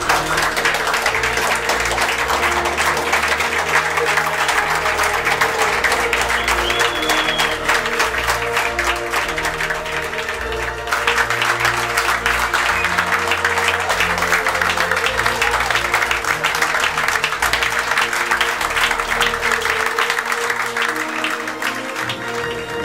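A crowd clapping steadily, with music playing underneath; the clapping eases briefly about halfway through, then picks up again.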